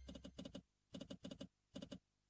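Online slot game's reel-stop sound effects: short clusters of rattling clicks, five in two seconds, one after another as the reels of a free spin come to rest. The tail of the game's music fades out at the start.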